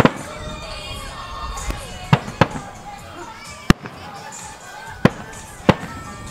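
Aerial firework shells bursting in a display: about six sharp bangs a second or so apart, the loudest at the very start.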